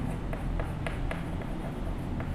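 Chalk writing on a chalkboard: a run of short, light taps and scrapes, a few strokes each second.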